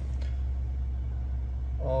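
Steady low hum of a 2021 Lincoln Navigator's 3.5-litre twin-turbo EcoBoost V6 idling, heard from inside the cabin.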